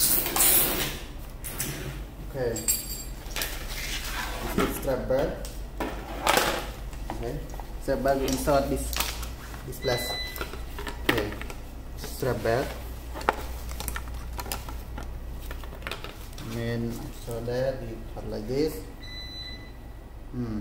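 A man talking in short bursts, with scattered sharp clicks and knocks as plastic and metal parts of a cordless grass trimmer and its shoulder harness are handled, over a steady low hum.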